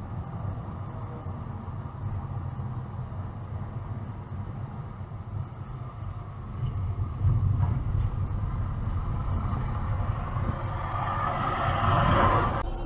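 Steady low rumble of a car's engine and tyres at highway speed, heard from inside the cabin, growing louder about seven seconds in. Near the end a rising rush of noise builds as a large vehicle comes alongside.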